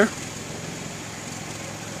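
A car engine idling steadily at about 600 rpm, heard from inside the cabin as a low, even hum.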